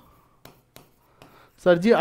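Faint tapping and light scratching of a stylus writing on a digital board, with a few soft taps about a second apart. A man's voice comes in near the end.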